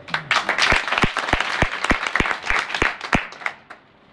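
A small group applauding, with one pair of hands clapping close by at about three claps a second; the applause dies away about three and a half seconds in.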